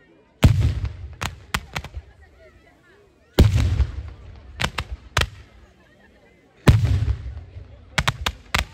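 Fireworks going off: three heavy blasts about three seconds apart, each followed by a quick run of sharp cracks, with faint crowd voices in the gaps between.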